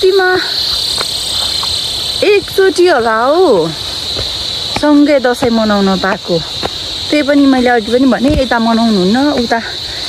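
Steady high-pitched drone of insects chirring in the surrounding vegetation, heard under a woman's talking.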